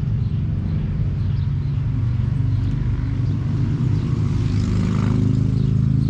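An engine running steadily at idle, a low even hum; its pitch rises a little and it grows slightly louder about four seconds in.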